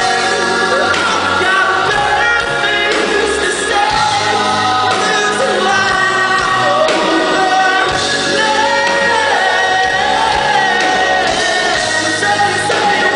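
Live rock band playing a song: a male lead vocal sung over electric guitars and keyboard, with a bass line moving underneath, heard from within the audience at a steady loud level.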